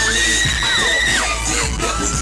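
Hip-hop backing beat playing through the stage speakers under a cheering young crowd. Over it one long high-pitched scream is held until a little over a second in, then falls away, with a shorter high cry near the end.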